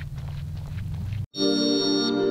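Low rumbling background noise for about a second, cut off abruptly; after a brief gap, a channel ident's sustained synthesizer chords start, with a high held tone on top.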